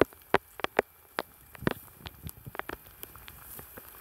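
Footsteps through dry grass and brush: irregular crackles and sharp snaps of dry stems, about a dozen in four seconds.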